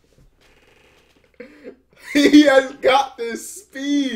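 Speech: an anime character's voice speaking Japanese in short phrases, starting about a second and a half in.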